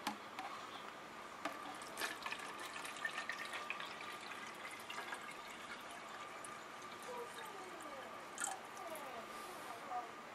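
Distilled water poured from a plastic gallon jug into a garment steamer's plastic water reservoir: a steady stream filling the tank, with a few short gurgles near the end.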